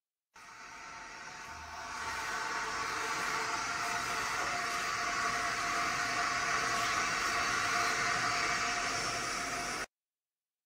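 Steady rushing whir of a motor-driven fan or blower with a faint steady whine in it, building up over the first couple of seconds, then holding level until it cuts off suddenly near the end.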